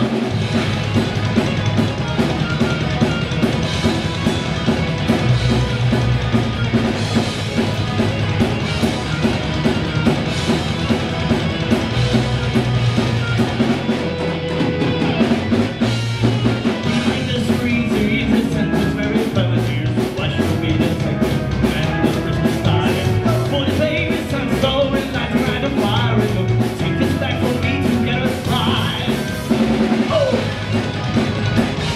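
Live hard rock band playing: electric guitars, bass and a drum kit keeping a steady driving beat, with a lead singer's voice over the band.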